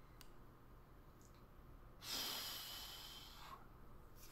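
A person's breath close to the microphone: one long exhale about two seconds in that fades away, over quiet room tone.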